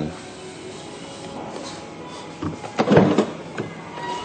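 Rear tailgate of a Mercedes-Benz GL SUV being unlatched and lifted open. It is quiet at first, then a short clunk and rush a little before three seconds in, with a smaller click just after.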